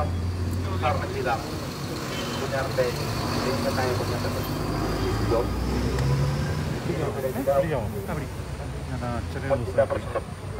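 A man speaking into a handheld microphone in a crowd, other voices around him, over a low steady rumble that fades about halfway through.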